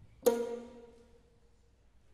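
Solo violin playing a single loud, sharp pizzicato (plucked) stroke about a quarter second in, which rings for about a second and fades away.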